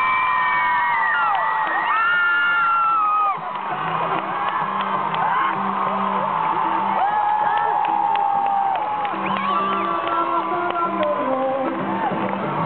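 Concert crowd cheering, with long high-pitched screams and whoops loudest in the first three seconds, then settling into steadier cheering and shouting.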